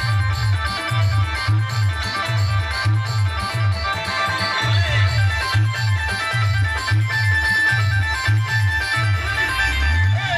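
Timli dance music played live by a band through a large outdoor sound system: a heavy bass beat about twice a second under a quick, stepping high melody line.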